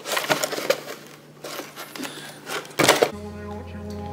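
A cardboard fire extinguisher box being handled, with irregular clicks and rustles, the loudest about three seconds in. Right after that, steady background music begins.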